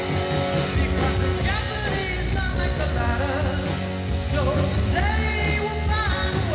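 Live rock band playing loudly: electric guitars, electric bass and drums under a male lead vocal.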